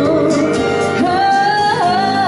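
A woman singing a pop song into a handheld microphone over music, holding a long note through the second half.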